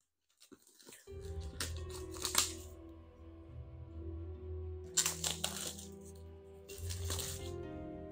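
Plastic shrink wrap being torn and peeled off a cardboard game box, crackling in three short spells. Background music with steady held notes starts about a second in and runs under it.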